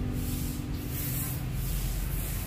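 Steady hissing outdoor noise with a low rumble, as a held musical note fades out in the first second or so.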